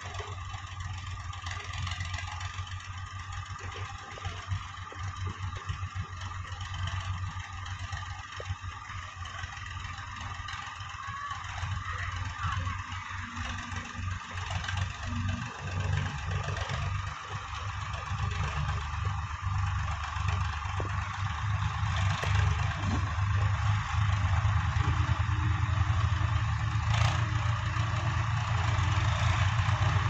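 Diesel tractor engine running as it hauls a loaded trolley, its low steady hum growing louder as the tractor comes closer.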